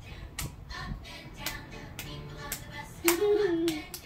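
A song with singing and a steady beat plays, and small hands clap along to it. A woman speaks briefly near the end.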